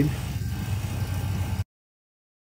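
Small 3.5 CFM oil-based rotary vacuum pump running steadily with a low hum, drawing air through the scrubber's flask train. The sound cuts off suddenly about one and a half seconds in.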